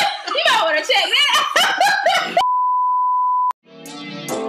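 A small group of people laughing hard, cut off abruptly about two and a half seconds in by a steady electronic beep lasting about a second. After a brief gap, guitar music starts near the end.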